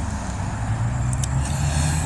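A steady low mechanical hum, like a running motor, with a couple of faint ticks just over a second in.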